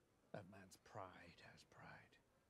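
Very quiet speech, the dialogue of the TV episode playing at low volume under the hosts' microphones.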